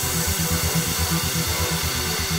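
Background music with a steady, quick low pulse.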